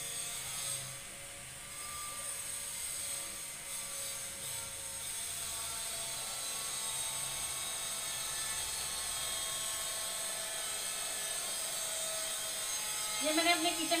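A small motor's steady high-pitched whine over a faint low hum.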